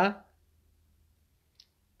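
A man's spoken Pashto word trailing off, then a pause of near silence with one faint short tick near the end.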